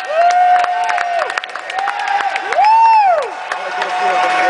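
Spectators in an arena hall cheering and clapping at the end of a jiu-jitsu bout. Two long shouts near the camera are the loudest sounds: one held near the start, and a second about two and a half seconds in that rises and falls in pitch.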